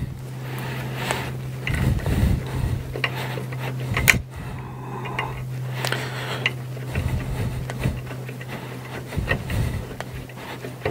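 Small screws being turned by hand into the threaded holes of an aluminium printer-frame plate: irregular metal clicks, ticks and scraping, the sharpest click about four seconds in, over a steady low hum.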